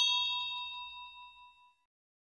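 Bell-chime sound effect ringing out: several clear tones that fade away within about a second and a half.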